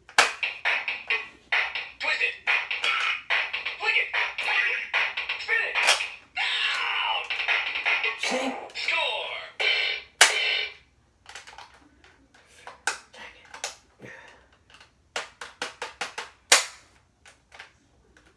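Bop It Extreme electronic toy in play: its tinny voice and sound effects call commands to a beat while its plastic handles click as they are worked. After about eleven seconds the toy's sounds stop and only scattered sharp plastic clicks and slaps remain as it is handled. The toy's spin-it handle is broken.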